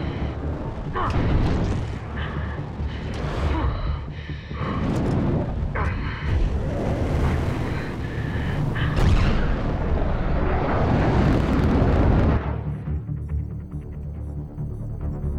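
Film sound of an F-18 fighter jet flying fast and low: a loud roar of jet engine and rushing air that swells and whooshes again and again over a deep rumble, mixed with music. About a second and a half before the end the roar drops away, leaving quieter music with a low throb.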